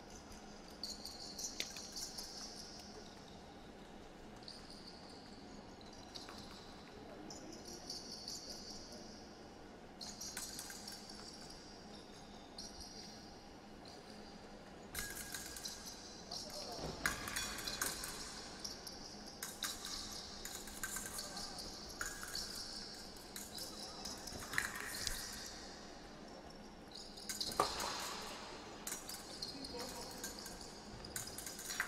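Épée fencers' footwork on a metal piste: shoes scuffing and sliding, with sharp stamps of lunges and advances. It grows busier and louder in the second half, with the loudest burst a little before the end.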